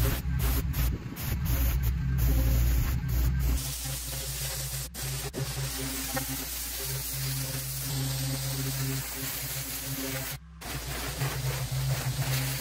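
Commercial pressure washer's wand spraying water onto concrete: a steady hiss with a low hum that comes and goes. Background music with a beat plays over the first few seconds, and the sound briefly drops out near the end.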